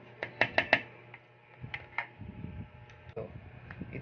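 A metal spoon clicking against a glass salad bowl as the salad is tossed: a quick run of four clicks in the first second, then a few scattered taps.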